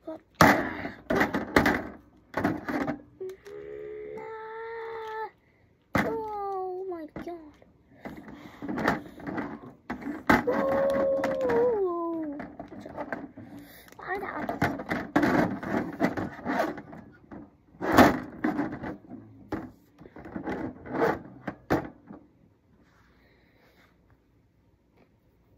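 A boy's voice making held and falling vocal sound effects and short exclamations, mixed with clacks and thuds of plastic wrestling figures being moved about a toy ring; one sharp knock about eighteen seconds in is the loudest sound.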